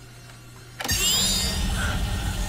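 Sci-fi device sound effect that starts suddenly about a second in: a low rumble under several high whines gliding upward, as a glowing device powers up and fires a beam.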